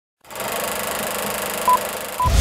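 Film projector running, a steady mechanical rattle starting a moment in, with one short high beep near the end, as on a film-leader countdown.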